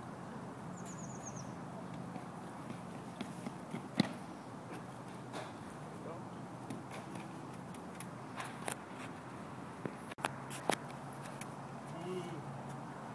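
Sounds of a pole vault attempt: a run of light clicks leading into one sharp knock about four seconds in, which fits the pole striking the plant box, followed by scattered knocks and thuds. Under it all is a steady low background with faint voices.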